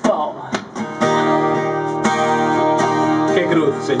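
Acoustic guitar strummed in a steady rhythm, starting about a second in after a brief moment of voices and laughter.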